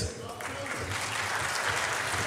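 Audience applauding, building up about half a second in and then going on steadily.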